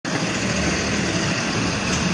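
A motor vehicle engine running steadily, with a constant low hum under an even noise.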